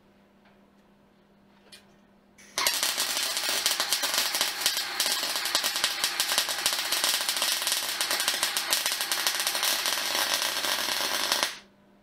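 Electric arc welding on steel box section: one continuous weld run with a dense, fast crackle that starts about two and a half seconds in and stops abruptly about a second before the end. It is one of the welds completing the joint on the stand.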